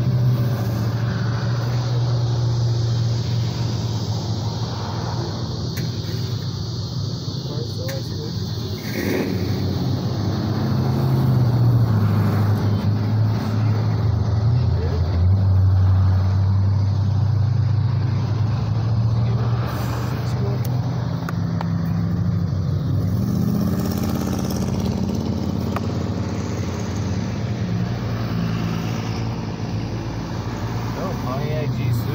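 Road traffic, cars and pickup trucks, driving past one after another, heard through the windshield from inside a stopped car. A steady low hum runs underneath, and the passing sound swells loudest about twelve and fifteen seconds in.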